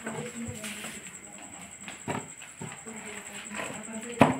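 A knife cutting through rolls of sticky mango leather (aamawat) on a plastic sheet, with a few soft knocks as the blade and pieces hit the surface beneath.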